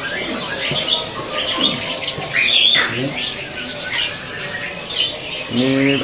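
Many caged songbirds chirping and singing at once, quick high calls and trills overlapping throughout, with a man's voice starting near the end.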